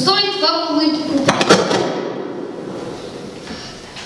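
A boy's voice reciting through a microphone and PA for the first second or so, then a few sharp knocks about a second and a half in, their echo fading in the hall.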